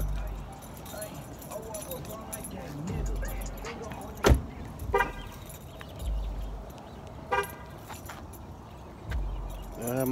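A car low on fuel failing to start: short low rumbles come about every three seconds as it is tried, with a sharp click about four seconds in and two brief beeps shortly after.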